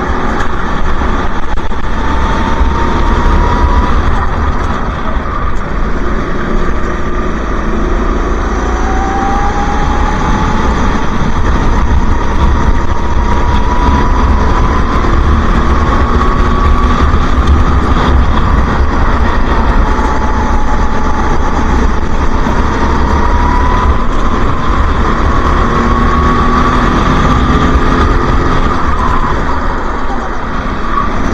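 Go-kart engine at racing speed heard from on board, its pitch climbing slowly along each straight and falling back for the corners, several times over, with a heavy low rumble underneath.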